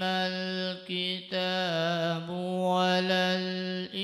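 A man reciting the Quran in a slow, melodic tajweed style into a microphone, drawing out long held notes. There are two sustained phrases, with a short pause for breath about a second in.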